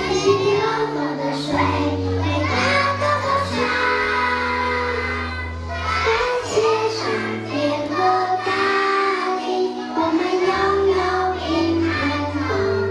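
A group of young kindergarten children singing a song together over an instrumental accompaniment with long held bass notes.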